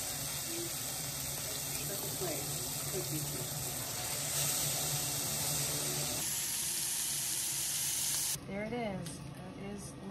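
Liver frying in a pan, sizzling steadily. The sizzling cuts off abruptly near the end, where a faint voice is heard.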